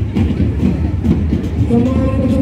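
Loud, steady low rumble of air buffeting the microphone, most likely from a pedestal fan blowing beside it, with an indistinct outdoor crowd beneath.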